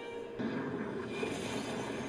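Cartoon soundtrack played back: a steady crash-and-fire noise of a vehicle crashing and exploding begins about half a second in, with background music under it.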